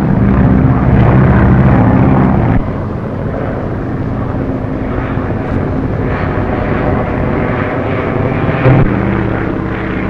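Propeller aircraft engine running steadily in flight. It drops suddenly to a lower level a little over two seconds in and swells briefly near the end.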